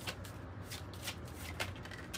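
A tarot deck being shuffled by hand: a quick, quiet run of card clicks.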